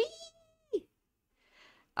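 A person's voice giving a playful drawn-out "whee!", a high note that rises, holds steady for most of a second and drops away at the end, followed by a soft breath in.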